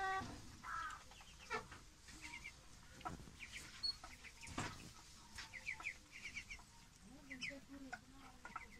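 A flock of young ducks peeping while they feed, faint short high calls in quick runs of three or four, with a few sharp knocks and a lower call near the end.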